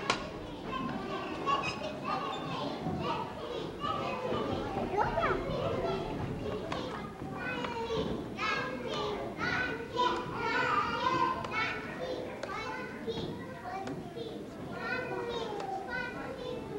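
Many young children chattering at once, their high voices overlapping.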